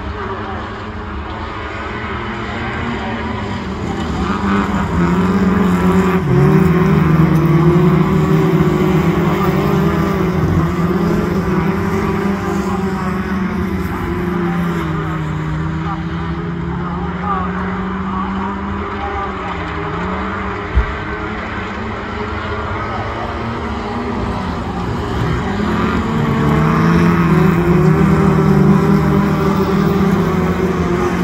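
Several autograss racing cars' engines revving and changing pitch as they race on a dirt oval, growing louder as the pack comes past about a fifth of the way in and again near the end. A single sharp knock about two-thirds of the way through.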